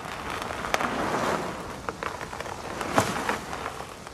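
A car tyre rolling over sandy, gravelly ground: a steady gritty crackle with a few sharp clicks scattered through it.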